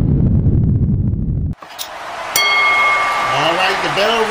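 A low rumble from the intro sting cuts off abruptly about a second and a half in. Then a wrestling ring bell dings once, ringing for about a second over a noisy background.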